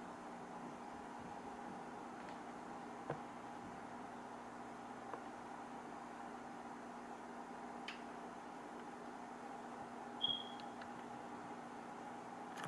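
Faint, steady hum of running aquarium equipment, with a few faint clicks and a short high tone about ten seconds in.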